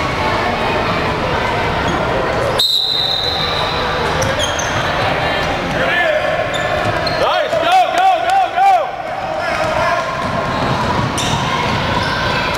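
Basketball game sounds in a gymnasium: a ball bouncing on the hardwood court amid players' and spectators' voices.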